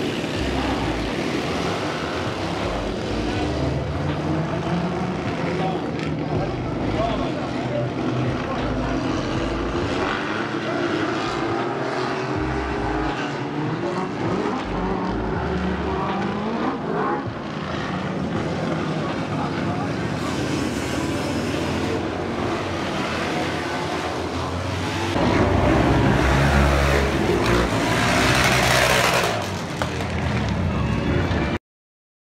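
Motorcycle engines running and revving as bikes race on a dirt oval, louder for a few seconds near the end.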